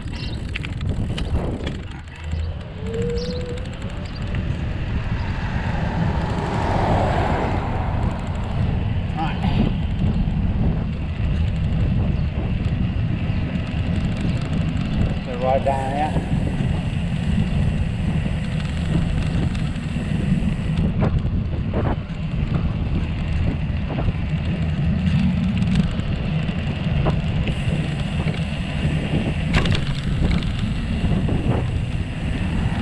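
Wind rushing over the microphone and the rumble of a knobby fat bicycle tyre rolling on tarmac, a steady, dense noise while riding along the road.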